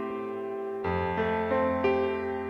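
Slow instrumental keyboard music. A held chord fades, a new chord is struck about a second in, and single notes are added over it one after another.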